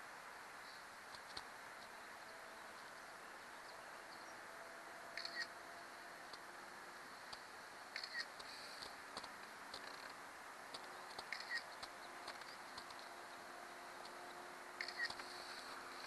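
Quiet open-air background with a faint steady hum, broken a few seconds apart by about four brief clusters of short clicks: a smartphone's camera shutter sound as photos are taken.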